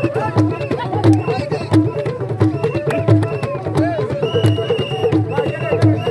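Hand drumming in a quick steady beat, about three deep strokes a second, with sharp higher strokes between and crowd voices singing over it; one voice holds a long high note near the end.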